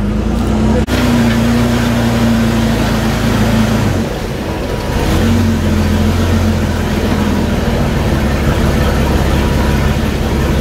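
Engine of an open-sided tour tram running steadily as it drives along. Its hum drops out briefly about four seconds in and picks up again a second later.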